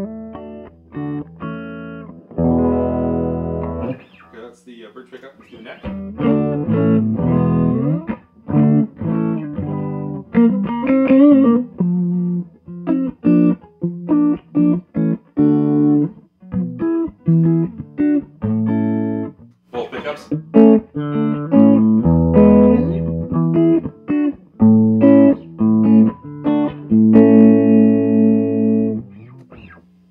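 Telecaster electric guitar played clean through a Dumble-modded Fender Bassman tube amp, its drive input set low: picked single notes and chords in short phrases with brief pauses between them.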